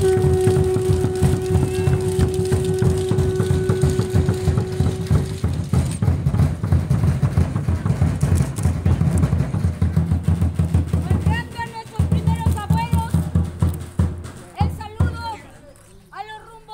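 An upright wooden drum (huehuetl) is beaten in a fast, steady rhythm that breaks off shortly before the end. Over the first five seconds a single long, steady blown note sounds above the drumming. Voices call out in the last few seconds.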